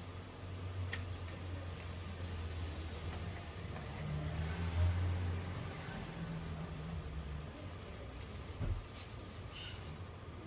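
Low engine rumble that swells about halfway through and eases off later, with a few faint clicks of coins being handled and stacked on a table.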